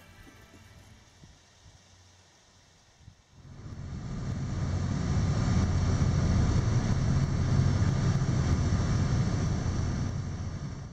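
Quiet at first, then about three seconds in the steady low rumble of a boat's engine, with the rush of water and air around the hull, fades in and holds.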